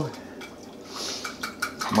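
Metal utensil stirring a liquid marinade in a ceramic bowl, with a few faint clinks against the bowl near the end.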